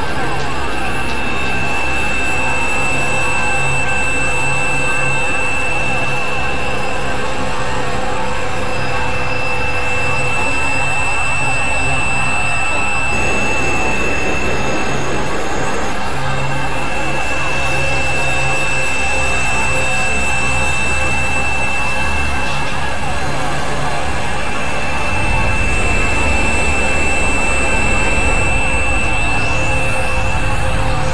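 Experimental electronic drone music: a dense, noisy synthesizer texture with a steady high held tone over a low rumble. It shifts about halfway through, and the low end swells near the end.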